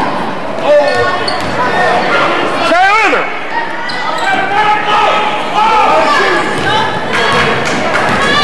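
Basketball bouncing on a hardwood gym floor during play, amid shouting voices of players and spectators that echo in the large hall. A brief rising-and-falling squeal cuts through about three seconds in.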